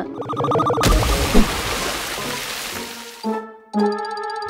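A sudden burst of water spraying and splashing about a second in, fading away over about two seconds, with short bits of music before and after.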